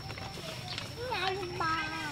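Indistinct people's voices start about a second in, high-pitched, over a thin steady high tone and a few faint clicks.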